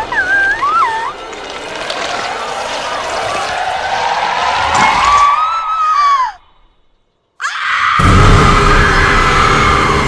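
Horror film soundtrack: a young woman's wavering cries over ominous score, building into a long rising wail that falls and breaks off into about a second of silence. Then a loud, sustained scream bursts in over a deep rumble.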